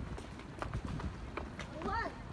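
Footsteps clicking on stone paving, with people's voices nearby; one voice is loudest near the end.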